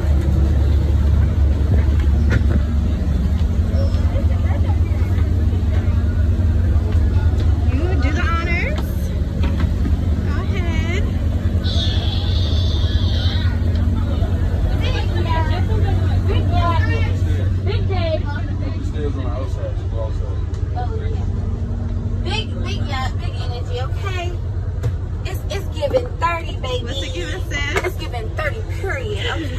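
A yacht's engines idling, a steady low rumble that eases off somewhat after about eighteen seconds, with women's voices talking over it.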